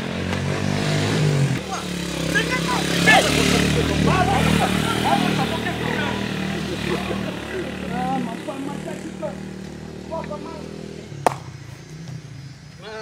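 Small motorcycle engine running, loudest in the first half and then fading away, with voices talking over it. A single sharp click comes near the end.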